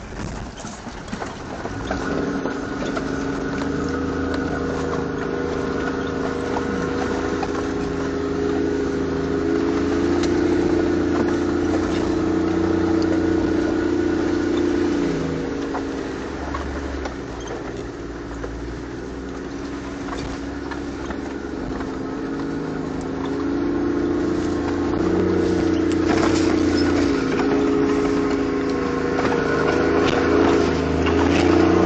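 Engine of a Toyota four-wheel-drive heard from inside the cabin while driving a rough dirt track. The engine note swells about ten seconds in, eases off around the middle and rises again in the last few seconds, with occasional knocks from the vehicle over the rough ground.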